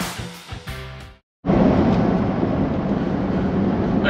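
Background music fading out about a second in, then after a brief silence the steady drone of engine and road noise inside a pickup truck's cab at cruising speed, towing a heavy fifth-wheel trailer.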